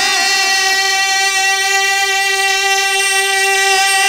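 Male naat reciter holding one long, steady high note with no words and no vibrato, unaccompanied.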